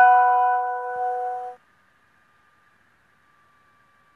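A man's voice holding one steady note, hummed with closed lips, for about a second and a half at the end of a chanted phrase, then cutting off. Near silence follows, with a faint steady high tone.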